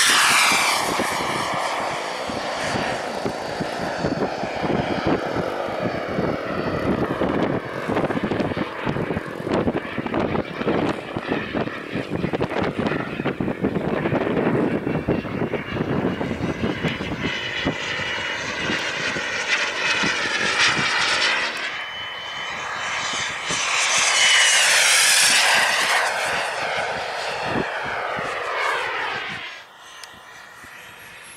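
Radio-controlled model jet flying, its engine a loud, steady rush and whine whose pitch sweeps up and down as it passes. It is loudest at lift-off and again in a close pass about three quarters of the way through, and cuts off suddenly at the very end.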